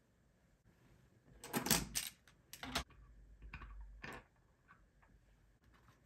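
Wooden pencils and a cardboard pencil box being handled on a wooden tabletop: a few short rustles and knocks, the loudest about one and a half to three seconds in.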